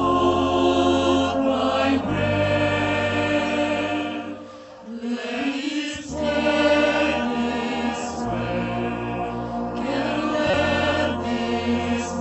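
A choir singing slow, held chords over a marching band's accompaniment, with low notes sustained beneath. It thins and drops in level briefly about four to five seconds in, then swells again.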